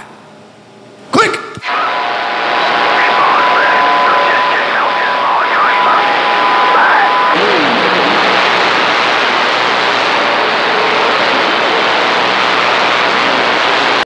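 Cobra CB radio on channel 6 (27.025 MHz) going from transmit to receive: a short burst about a second in, then loud steady static. For the first half the static carries heterodyne whistles and faint, garbled distant voices; these are weak skip signals fading in and out on the open 11-metre band.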